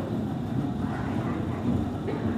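A refrigerated steel coffin being rolled across a wooden floor, making a continuous low rumble.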